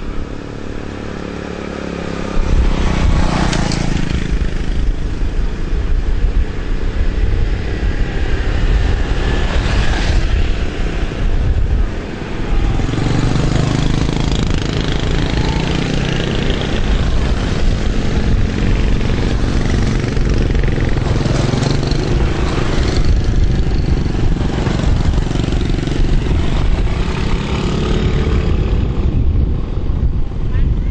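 Small motorcycles and scooters riding past on a road, engines running, over a loud, rough low rumble. The sound grows louder a couple of seconds in and stays busy, with a brief dip partway through.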